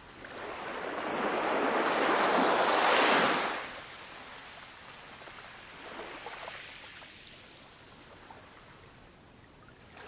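Ocean waves washing in: one large wave swells over the first three seconds and falls away quickly, followed by smaller washes about six seconds in and again at the end.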